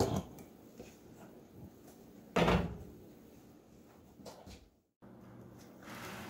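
A single solid thump about two and a half seconds in, then a couple of faint knocks, like kitchen things being handled and set down.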